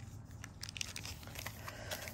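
Crinkling and crackling of a Magic: The Gathering booster pack's foil wrapper being picked up and handled, faint, a run of small crackles that grows busier after the first half-second.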